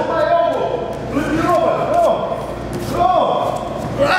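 Wordless voice sounds that rise and fall in pitch, several times over, during close grappling on a mat.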